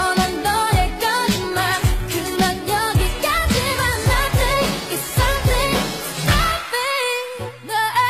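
Asian pop dance track with singing over a deep kick drum that drops in pitch on each stroke, about two beats a second. The drums drop out for about a second near the end, then come back.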